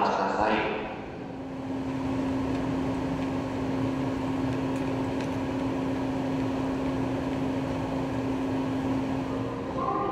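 Steady electrical hum from a stationary 381-series limited express train standing at the platform, with one low steady tone that starts about a second in and cuts off just before the end, over the even background noise of a large station.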